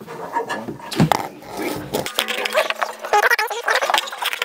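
Men grunting with effort as they lift a heavy metal battery cabinet onto a steel wall bracket, with a sharp knock of metal on metal about a second in and lighter clatter as it settles.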